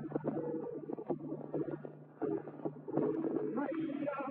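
Flamenco guitar playing on an early-1950s 78 rpm record, strummed chords and picked phrases, with a narrow, muffled sound and a steady low hum. The playing thins briefly about two seconds in.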